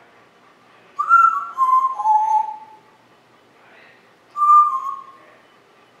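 African grey parrot whistling: a run of short notes stepping down in pitch, then a second, shorter falling whistle a few seconds later.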